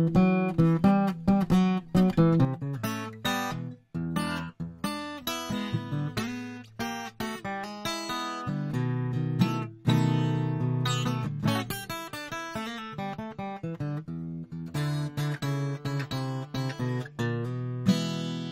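Acoustic guitar picking and strumming chords with many sharp note attacks, heard as playback of a mid-side recording made with a Rode NT55 cardioid and a Rode K2 figure-eight mic. The duplicated figure-eight track's phase is set back to normal here, which undoes the mid-side stereo effect.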